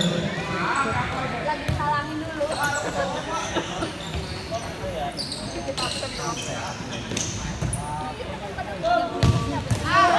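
Futsal being played on a hard indoor court: the ball being kicked and bouncing, with a few sharp knocks, under scattered shouting from players and onlookers in a large hall.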